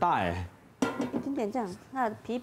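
Voices talking: a long exclamation falling in pitch, then quick speech.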